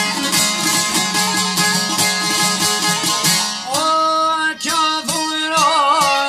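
Albanian folk music: a plucked long-necked lute (çifteli) plays a fast instrumental run, then a male voice comes in singing, with wavering ornaments, about three and a half seconds in.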